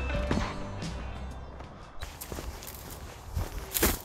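Background music fading out over the first couple of seconds, then footsteps on a dirt towpath, a few steps with the strongest near the end.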